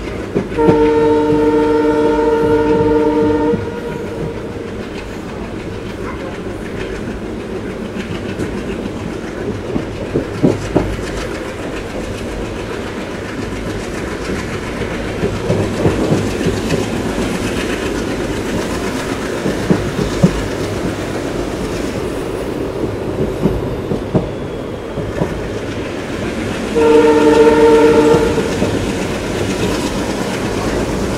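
Horn of an ALCO WDG3a diesel locomotive sounding two blasts of several notes at once: a long one of about three seconds near the start and a shorter one near the end. Under it runs the steady rumble of the moving train, with the wheels clattering now and then.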